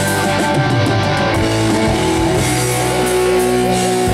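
A live rock band playing loudly, with electric guitar over bass and a drum kit.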